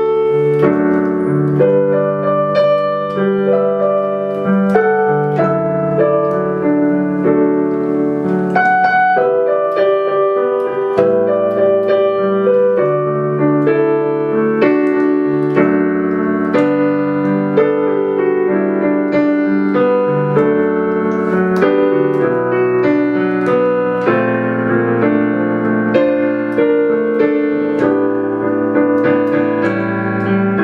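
Digital piano playing a slow ballad arrangement: a melody in the right hand over held chords in the left, with notes sustained and overlapping.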